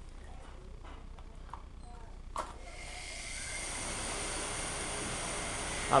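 Sole washing-machine induction motor, wired with its start capacitor on pins 1 and 3, switched on with a click about two and a half seconds in and then spinning up, a whooshing run with a faint hum that grows steadily louder. On this correct pin combination it comes up to speed quickly.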